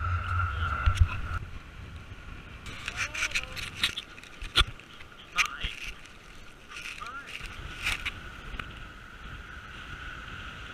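Action-camera handling noise: scattered knocks, taps and scrapes on the camera body, with wind on the microphone in the first second or so.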